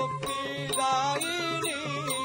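Traditional Odissi music for a Gotipua dance: a singer's wavering, ornamented melody over a steady drum beat and sharp rhythmic ticks.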